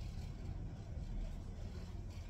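Low, steady background rumble with no distinct events.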